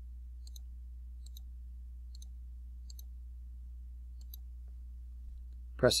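Five faint computer-mouse clicks, roughly a second apart, each click placing another part into a CAD assembly. A steady low hum runs underneath.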